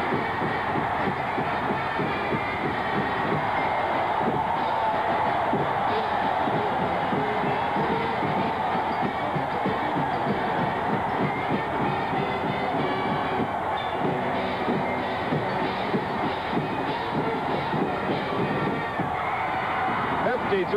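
Large stadium crowd cheering a home-team touchdown, a steady, loud din with a band playing underneath.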